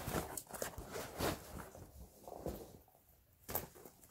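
Handling noise of school supplies being packed into a backpack: a plastic folder slid in, with a run of short knocks, taps and rustles, a quieter moment, then one more knock near the end.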